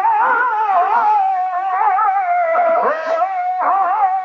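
Wind-instrument music, loud throughout: a steady held drone note with a wavering, ornamented reedy melody playing above it.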